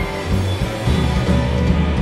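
Rock band playing live: electric guitars, with bass and drums coming in hard right at the start and carrying on with a steady beat.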